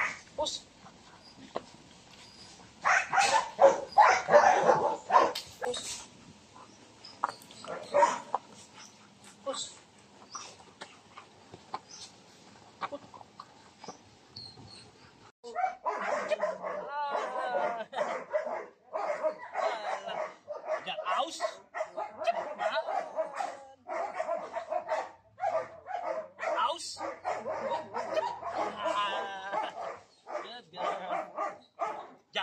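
Belgian Malinois puppy barking and yipping in short repeated bursts. There is a cluster about three to five seconds in, then almost nonstop from about halfway through while it tugs on a rag toy.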